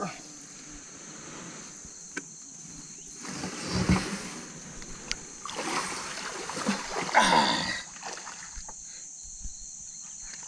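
Shallow river water splashing and sloshing as a man wades and lifts a large flathead catfish out of a jon boat, with a dull thump about four seconds in. A short strained vocal sound comes at about seven seconds in.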